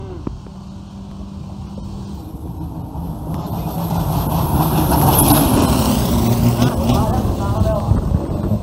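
A turbocharged diesel longtail racing boat running flat out past at high speed: the engine grows louder as it closes in, peaks about five seconds in as it passes, then fades as it runs off up the canal.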